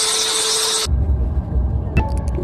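TV static glitch sound effect: a loud hiss with a steady hum under it, cutting off sharply about a second in. A deep low rumble takes over for the rest.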